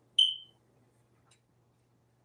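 A single short, high-pitched electronic beep that fades quickly, over a faint steady hum.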